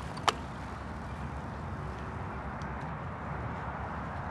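Steady outdoor background noise, a low rumble with a hiss over it, with one sharp click just after the start.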